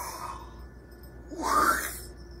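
A woman's theatrical deep breath: the tail of a long, breathy inhale fades out in the first half-second, then about a second and a half in comes one short breathy puff with a little voice in it.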